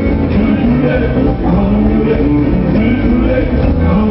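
Live rock band playing loudly, with electric guitar over bass and drums.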